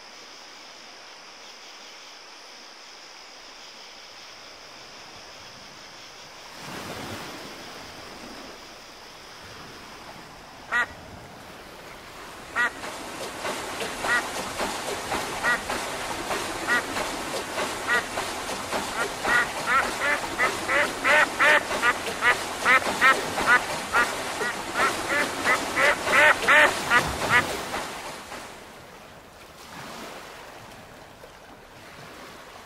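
A duck quacking: a run of short quacks starting a little before halfway, coming faster and louder, then stopping shortly before the end. Before the quacks, a steady hiss with a brief whoosh and a single sharp click.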